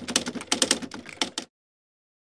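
Typewriter typing sound effect: a rapid run of key clacks as text types out on a title card, stopping about one and a half seconds in.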